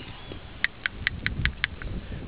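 Check ball rattling inside a used PCV valve as it is shaken by hand: quick, light clicks about five a second, after a short pause at the start. The ball still rattles, the sign that the valve still works despite its carbon build-up.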